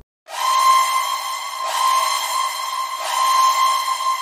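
An alarm-like warning tone, a whistle-like sound held at one pitch over a hiss, begins about a quarter second in and swells four times, about a second and a half apart.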